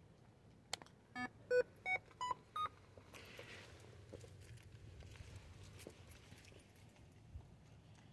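Small electronic ghost-hunting sensor box with an antenna being switched on: a click, then five short beeps climbing in pitch over about a second and a half, the device's start-up signal.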